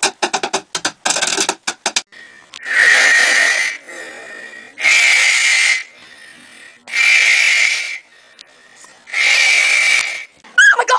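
Rapid drumstick taps on wood for about two seconds. Then four long, loud, raspy noises, each about a second long and about two seconds apart.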